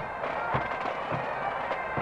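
Pipe and drum band playing: bagpipes sounding over a steady bass drum beat, a little under two beats a second.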